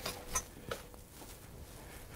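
Faint clothing rustle and a few soft ticks from a person moving about, mostly in the first second, then quieter.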